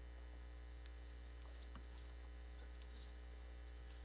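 A steady, low electrical mains hum, with a few faint scattered clicks.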